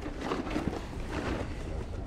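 Open-air background noise with a low rumble and faint distant voices, with a few small handling clicks.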